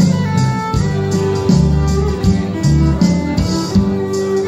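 Fiddle bowing a melody over a steadily strummed acoustic guitar: an instrumental break with no singing.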